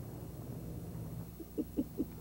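Faint, steady low hum of background room tone, with a brief quiet voice saying "oh, okay" near the end.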